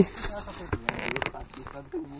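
Faint voices talking in the background, with a brief rustle of footsteps on dry leaves about a second in.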